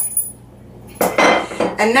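A spoon clinking and scraping against a metal mixing bowl about a second in, as crushed garlic is scraped from a small dish into a marinade.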